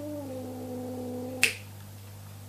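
A cat's long, low moan that slides slowly down in pitch and holds, ending with a single sharp click about one and a half seconds in.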